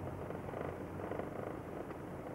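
Steady rumble of a car's engine and tyres on a hail-covered road, heard from inside the cabin.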